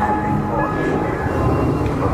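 Haunted Mansion Doom Buggy ride vehicle rumbling steadily along its track, with the ride's eerie background music faint underneath.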